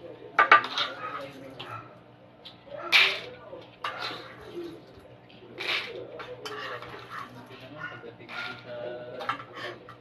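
Dry mung beans poured and spooned into a small ceramic cup, rattling and clinking in a few short bursts with small clicks between them.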